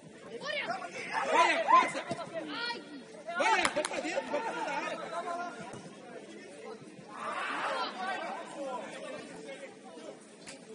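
Players' voices calling and shouting across the pitch, in three loud stretches: near the start, around four seconds in, and at about seven to eight seconds.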